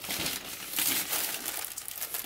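Plastic wrapping of a pack of disposable diapers crinkling irregularly as it is handled in the hands.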